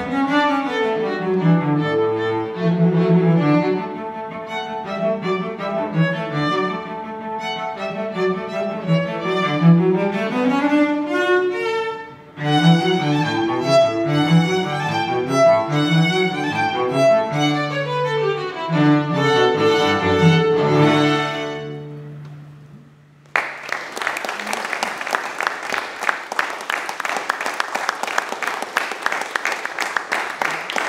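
Violin and cello duo playing a piece that ends on a long held low note, then the audience applauds for the last several seconds.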